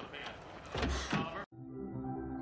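Film soundtrack with a few quick swishing sweeps. It cuts off abruptly about one and a half seconds in, and soft sustained music with steady held chords begins.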